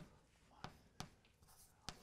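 Chalk writing on a blackboard: four sharp taps as the chalk strikes the board, with a faint scratch between them.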